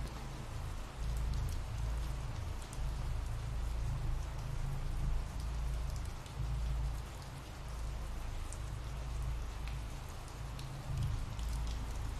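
Steady rain, an even patter with a low rumble underneath and a few faint drop ticks.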